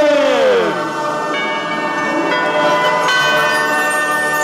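Crowd shouting the final number of a countdown, then from about a second in, bell-like chimes ringing in layered, sustained notes as the Christmas tree lights come on.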